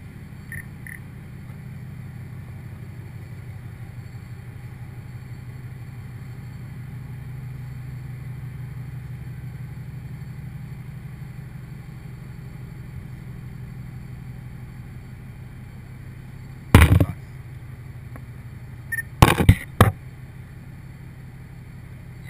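A steady low mechanical hum during a manrider ride up a drilling derrick, broken by one sharp, loud knock about three-quarters of the way through and then a quick cluster of knocks a couple of seconds later.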